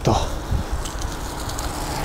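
Wind buffeting the camera microphone during a ride on an electric bike, a steady rumbling rush of noise with the tyre noise of a wet road underneath.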